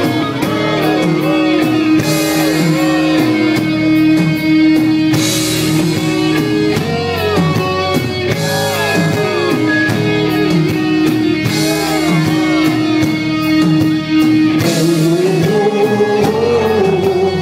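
Heavy metal band playing live: distorted electric guitars over drums, with a gliding lead melody above a long held note and repeated cymbal crashes.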